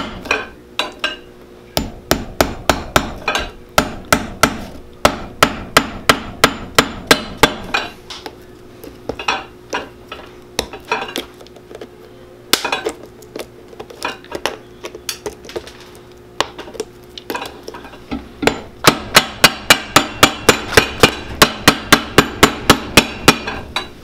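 Cobbler's hammer driving thin square-cut iron nails through a leather heel block into the sole, in quick runs of sharp strikes, sparser through the middle and fastest near the end.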